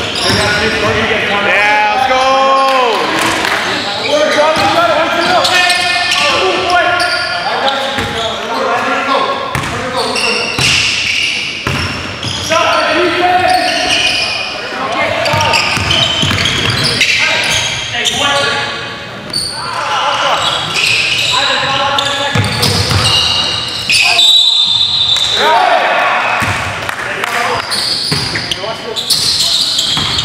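A basketball being dribbled on a hardwood gym floor, with players' voices echoing through the large hall.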